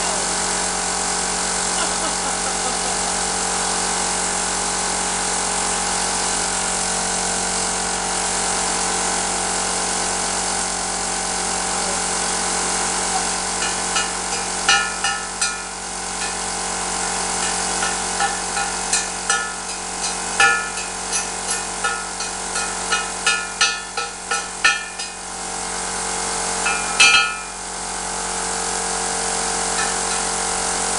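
Cheap Chinese CUT40 plasma cutter cutting through the steel wall of an argon bottle: a steady arc hiss. From about halfway it turns to irregular sizzling crackles and pops, with a couple of brief breaks near the end.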